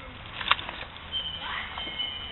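A meow-like call that swoops up and down, preceded by a sharp click about half a second in, with a thin steady high tone underneath.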